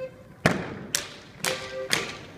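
Schuhplattler dancers' sharp slaps, claps and stomps, four hits about half a second apart, over faint accompanying music.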